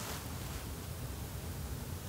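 Road traffic: a passing vehicle's tyre hiss with a low rumble, growing slightly louder.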